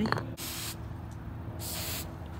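An aerosol hairspray can sprayed twice in two short sprays, about a second apart.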